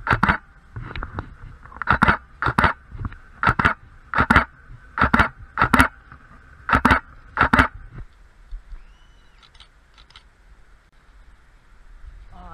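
Camera shutter firing about ten times, the clicks coming in pairs a little under a second apart and stopping about eight seconds in.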